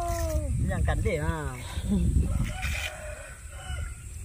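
A man's voice talking during the first second and a half, over a steady low rumble.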